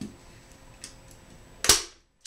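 Hand-held manual staple gun firing once, a single sharp snap about one and a half seconds in, as it drives a staple through upholstery fabric into a chair's seat board. Faint handling clicks come before it.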